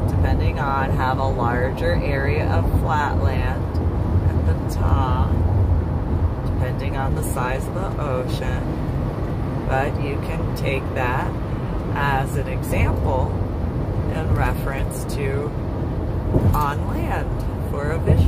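A woman talking inside a moving car, over the steady low rumble of road noise in the cabin.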